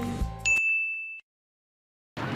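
A single ding sound effect: one bright high tone that starts sharply, holds for well under a second and cuts off suddenly.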